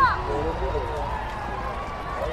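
Voices calling out on a football pitch during play: a loud falling shout at the start, then short calls and one long held call. A low rumble runs underneath.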